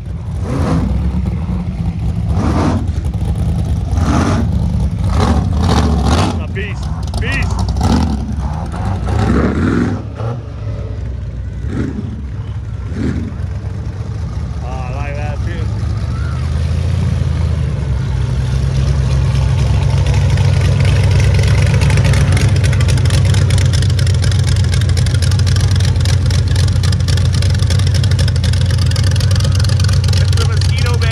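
Big-block V8 engines of rat rods and hot rods running as the cars roll by, revving in short blips through the first dozen seconds. From about eighteen seconds in, a loud steady low rumble takes over as one idles close by.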